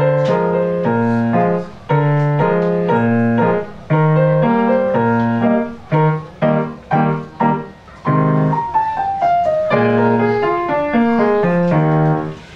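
Grand piano played live: chords over low bass notes, broken by a few short pauses, with a falling run of notes about nine seconds in.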